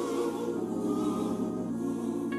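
Gospel choir holding one long, steady chord at the close of a sung phrase.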